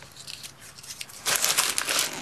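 Packaging of an opened book parcel crinkling and rustling as the books are handled and pulled out. It is faint at first and grows into a dense run of crackling in the last second.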